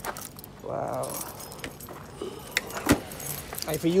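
A bunch of keys jangling and clinking in a series of short metallic clicks, with a single sharp knock about three seconds in.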